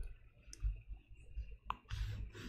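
A few faint, sharp clicks spread over two seconds of quiet room tone.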